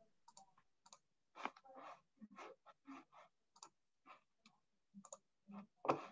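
Faint, irregular clicking: many short separate clicks, about three a second, the loudest one near the end.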